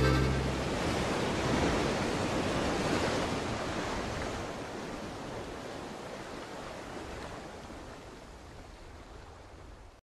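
Ocean surf washing on a shore, an even rushing noise that grows steadily fainter. The song's last low note dies away at the very start.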